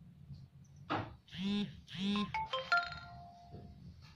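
A knock about a second in, then a short electronic jingle like a phone ringtone or alert: two arching pitched notes followed by a few steady beeping tones that step in pitch.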